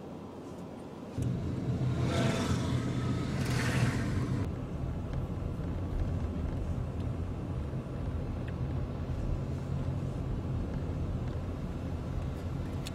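Car driving, heard from inside the cabin: a steady low engine and road rumble that starts suddenly about a second in. Between about two and four seconds in, a louder rushing hiss lies over it.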